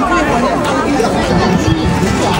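Crowd chatter: many voices talking over each other at once, with no single clear speaker.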